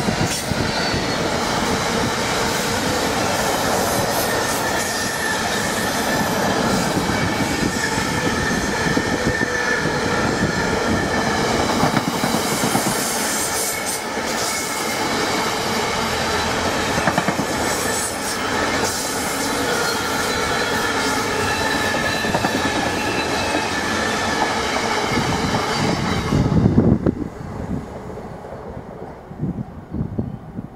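Container wagons of a Class 66-hauled intermodal freight train passing at speed, a steady loud run of wheel-on-rail noise. Near the end there is a brief low rush, the loudest moment, as the last wagon clears, and then the sound drops away sharply.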